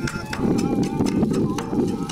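Kagura music: a taiko drum and small hand cymbals striking a quick, even beat of about four strokes a second, with a melody line over it.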